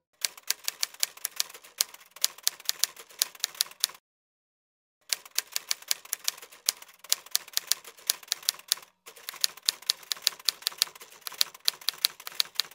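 Typewriter keystrokes as a text-on sound effect: quick runs of sharp key clacks. They stop for about a second around four seconds in, and briefly again near nine seconds.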